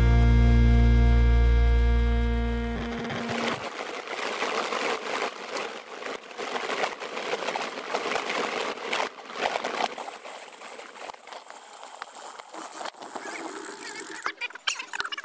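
A song ending on a held chord that fades out about three seconds in. Then riding noise from a handlebar-mounted camera on a racing bicycle: a rushing hiss with many scattered clicks and rattles.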